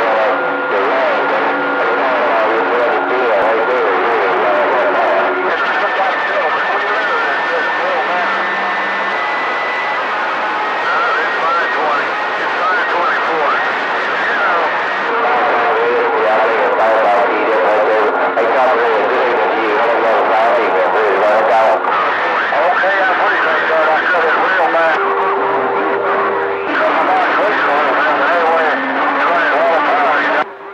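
CB radio receiver on channel 28 full of skip: several distant stations talking over one another, garbled and unintelligible, under constant static with steady heterodyne whistles that come and go.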